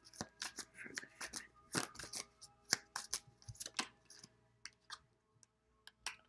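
A deck of tarot cards being shuffled and handled by hand: a quick run of soft card flicks and taps for about four seconds, then only a few isolated clicks.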